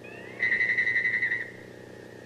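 Electronic sci-fi sound effect: a high tone that glides briefly upward, then trills in rapid pulses for about a second and cuts off, over a faint low hum.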